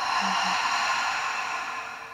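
A woman's long open-mouthed exhale, a breathy sigh releasing a deep belly breath, slowly fading out near the end.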